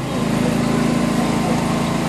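A steady, loud buzzing drone, like a small engine running at constant speed.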